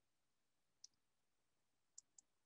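Near silence, broken by two faint, short clicks, one just under a second in and one at the end.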